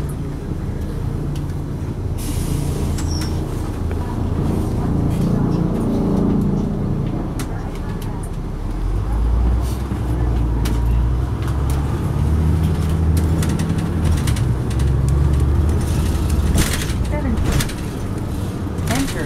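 Caterpillar C9 diesel engine of a Neoplan AN459 articulated transit bus heard from inside the cabin, running under load as the bus pulls along. Its pitch rises and falls as it accelerates and the automatic transmission shifts.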